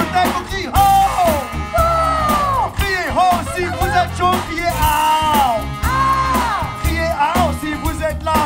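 Live funk band playing a steady groove, with a singer's voice gliding over it in sung phrases.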